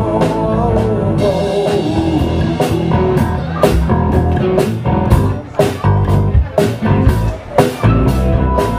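Live rock band playing an instrumental passage: electric guitars holding sustained notes over bass and a drum kit. About a third of the way in the drum hits come forward, landing roughly twice a second.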